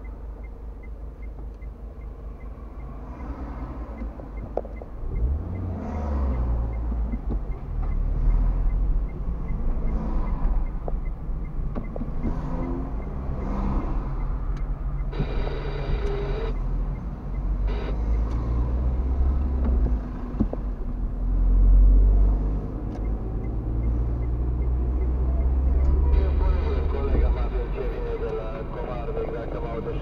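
Engine and road noise heard from inside a car's cabin: low and quieter while stopped in traffic, then rising as the car pulls away and drives on, with surges as it accelerates.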